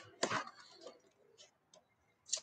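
Cardboard and clear plastic action-figure box being handled: one sharp click or crinkle about a quarter second in, then a few faint ticks.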